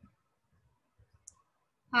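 Near quiet with a few faint short clicks about a second in; a woman's voice ends just at the start and another begins near the end.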